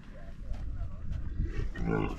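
Dromedary camel grumbling as it gets to its feet, a low throaty sound that grows louder near the end.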